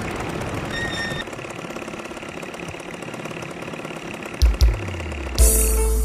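ATV engines running with a rapid pulsing under background music. Two loud low thuds come about four and a half seconds in, then a loud hit near the end as music with a steady bass and piano-like notes takes over.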